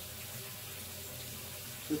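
Steady background hiss, even and unbroken, with no distinct knocks or other events.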